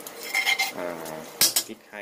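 A cooking utensil scraping and clinking against a non-stick wok during stir-frying: a scratchy scrape about half a second in and a sharp clink about a second and a half in.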